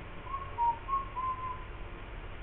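Four short whistled notes in quick succession, the second a little lower than the others, over steady room noise.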